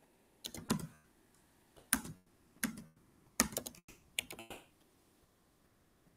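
Computer keyboard keys clicking in five short bursts of typing, spread over about four seconds.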